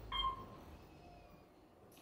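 Elevator arrival chime: one short ding about a quarter second in, then only a low hum.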